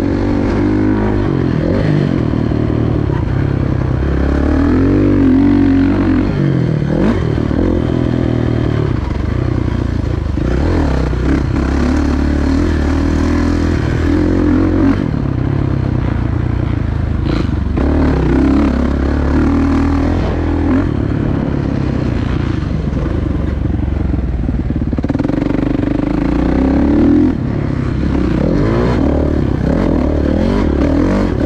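Motocross bike engine heard from on the bike as it rides a dirt track, its pitch rising and falling over and over as the throttle opens and closes, with clatter from the bike over the rough ground.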